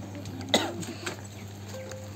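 A single short cough about half a second in, over a faint low steady hum.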